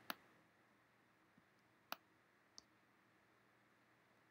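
Computer mouse clicking over near silence: one sharp click right at the start and another about two seconds in, with a couple of fainter ticks between them.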